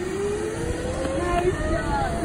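Zipline trolley running down a steel cable, a thin whir that rises slowly in pitch as it picks up speed, over a steady rush of river and wind noise.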